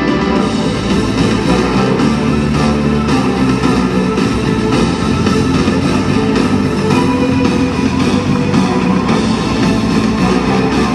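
Loud rock backing music with guitar and a steady beat, played for a stage illusion.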